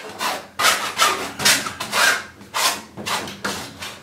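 A cake knife scraping and spreading thick acrylic paint across a stretched canvas in repeated rasping strokes, about two a second.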